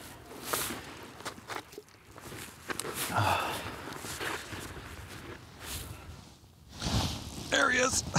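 Scattered crunching and rustling of boots, knees and winter clothing shifting on packed snow.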